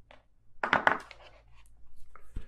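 Tarot cards being handled on the tabletop: a short flurry of sharp clicks and rustle a little over half a second in, followed by a few faint ticks.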